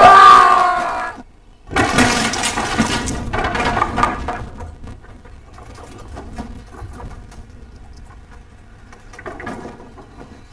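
A man's loud yell, then a homemade wooden backyard play structure, built on a sand base, collapsing. Timber cracks and boards fall with a loud crash about two seconds in, then it fades into scattered clattering.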